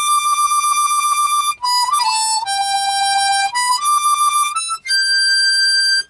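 Key-of-C diatonic harmonica playing a short, high, slow melody of held notes. The cupped hands give the tone a quick, fluttering tremolo: the hand-made 'campfire' wah-wah sound, as opposed to the sealed-to-open wah.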